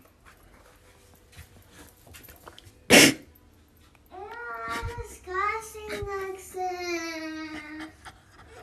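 A high voice whining in three drawn-out, wavering cries, starting about four seconds in, the last one long and falling. Before them comes a single sharp burst of noise, the loudest thing here, about three seconds in.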